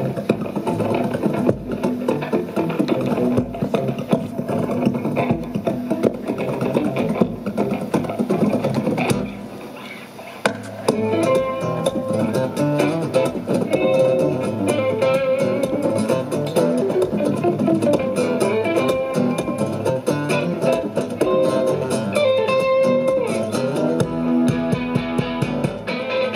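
Two acoustic guitars played live as a duo: fast rhythmic strumming with sharp percussive strikes, a brief drop about ten seconds in, then a picked lead melody over the rhythm.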